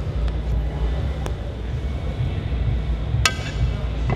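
A steady low rumble in the background, with a few light clicks and one sharp, ringing clink of a metal utensil about three seconds in, as pasta is served with tongs.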